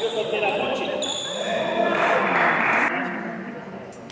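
Voices talking in the background while a table tennis ball bounces, clicking on the table and paddle.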